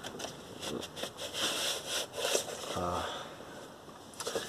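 Cardboard LP gatefold sleeve rustling and scraping as it is folded open by hand, its inner pages partly stuck together. A short hum from the voice just before the end.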